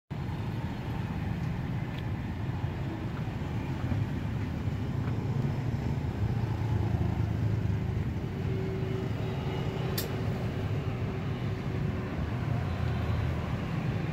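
Steady low rumble of street traffic, with one sharp click about ten seconds in.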